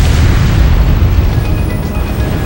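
A deep cinematic boom, rumbling and slowly dying away, over a film music score whose held notes come back through it in the second half.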